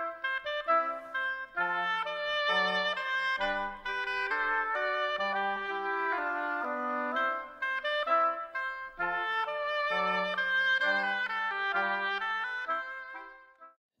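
Oboe playing a melody of separate notes with a bright, reedy tone, trailing off shortly before the end.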